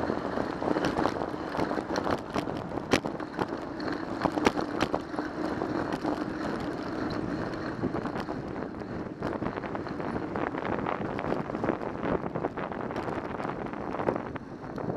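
Wind rushing over a bike-mounted camera's microphone as a bicycle rolls along a city street, with steady tyre and road noise. Frequent small clicks and knocks come as the bike rattles over cracked pavement.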